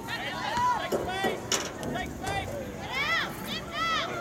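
High-pitched shouts and calls from players and onlookers at a girls' soccer match, with two loud arching calls near the end. A single sharp knock comes about one and a half seconds in.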